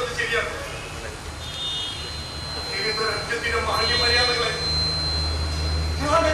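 An actor speaking stage dialogue, in short phrases with a pause between them. A low, steady hum comes in about halfway through and runs under the voice.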